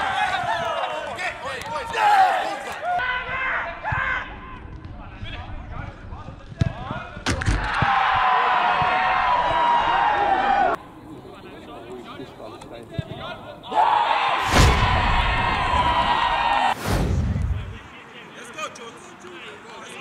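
Men on a football pitch shouting and cheering in long held calls, with a few sharp thuds in between.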